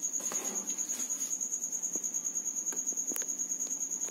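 An insect's continuous high-pitched trill made of rapid, even pulses, with a faint click about three seconds in.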